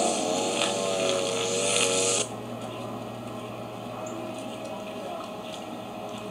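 A steady low electrical hum. For about the first two seconds a wavering pitched whine with hiss rides over it, then cuts off abruptly, leaving the hum with faint ticking.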